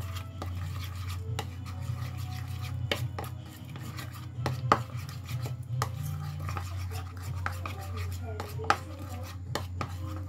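A spoon stirring thick flour batter with spring onions in a ceramic bowl, scraping and knocking irregularly against the bowl, with a few sharper clacks. A steady low hum runs underneath.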